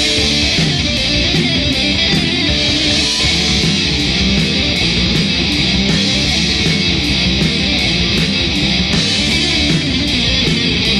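Traditional heavy metal song in an instrumental passage: guitars over bass and drums, loud and steady with an even beat.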